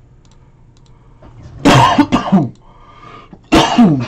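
A man coughing loudly in two bouts, one about a second and a half in and another near the end.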